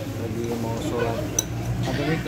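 A single sharp clink of chopsticks against a ceramic noodle bowl about one and a half seconds in, over voices in the background.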